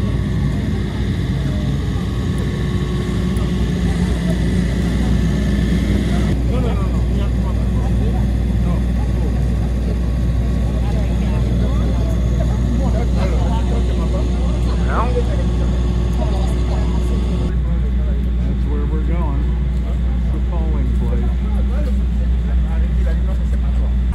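Towable rental generator running with a steady low engine drone and a few steady tones above it, heard up close. Faint voices and movement sounds lie under it.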